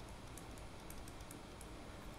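Faint, irregular clicks of a computer pointing device over low room hiss, made while handwriting is entered on screen.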